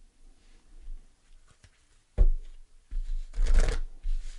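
Tarot cards handled on a table: a soft knock a little past halfway, then about a second of card rustling near the end.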